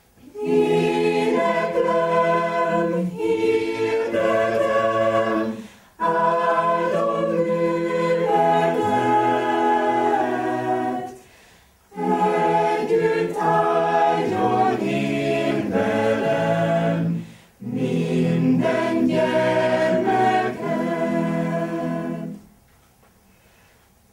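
Choir singing a cappella in harmony, several voice parts together, in phrases of about five to six seconds with brief breaths between them; the singing ends right at the close.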